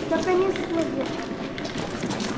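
Indistinct voices speaking, too unclear for words to be made out.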